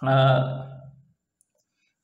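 A man's voice: one drawn-out spoken syllable lasting about a second, then a pause.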